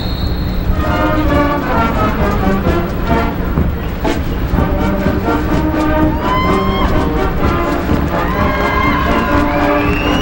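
High school marching band, with sousaphones, baritones, trombones and trumpets over drums, playing a march outdoors in a stadium. A high steady whistle tone cuts off about half a second in.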